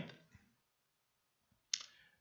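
A man's voice trails off, followed by about a second of near-silent room tone. Near the end comes one short, sharp click-like noise just before he speaks again.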